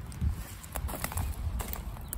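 Footsteps crunching on dry wood-chip mulch: a few irregular sharp clicks over a low rumble.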